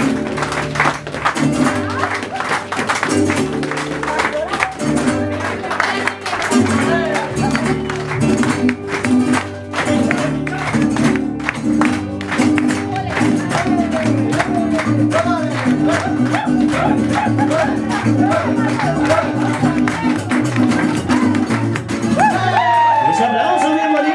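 Live mariachi music: an up-tempo dance number with strummed guitars driving a fast, even rhythm and hand-clapping along.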